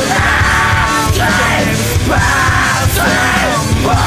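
Loud rock song played by a full band, with shouted vocal phrases about a second long over a dense, steady backing.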